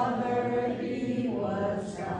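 A woman singing unaccompanied in slow, held notes.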